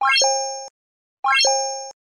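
Like-and-subscribe end-screen animation sound effects: two identical short chimes about a second and a quarter apart, each a quick upward run of bright notes that lands on a ringing chord and fades.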